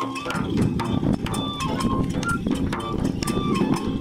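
Kagura music: a taiko drum and sharp, rapid percussion strikes under short, held flute-like notes, growing fuller and louder about a third of a second in.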